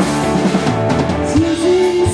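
Live rock band playing: electric guitars, bass and drum kit together, with a note that slides up and holds about a second and a half in.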